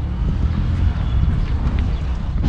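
Wind rumbling on the microphone: a steady, uneven low rumble with a faint hiss above it.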